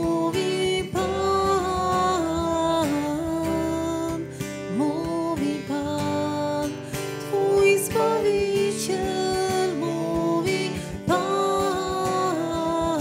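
Worship song: steadily strummed acoustic guitar under a sung melody with long, held notes.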